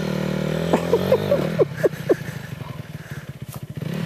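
Dirt bike engine running at a steady, raised rev, then dropping back to a quieter, evenly pulsing idle in the second half.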